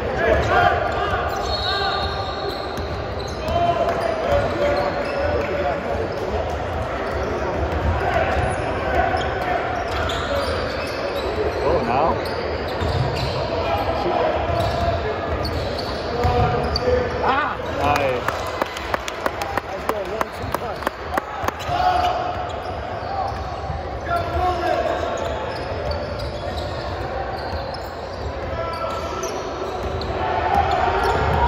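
Basketball being dribbled on a hardwood gym floor during a game, with a run of steady bounces, about two a second, a little past the middle. Players' and spectators' voices echo through the gym throughout.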